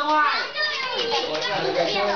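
A crowd of children playing together: many young voices talking and calling over one another throughout.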